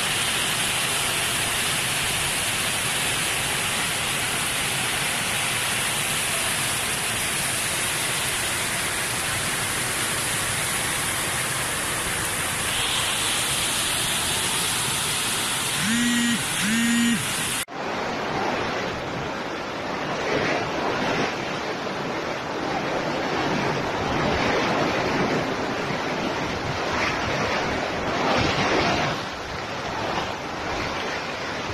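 Storm wind and heavy rain in a steady rushing roar. Just past halfway two short pitched beeps sound, and then the sound cuts abruptly to a second recording where the wind and rain surge unevenly in gusts.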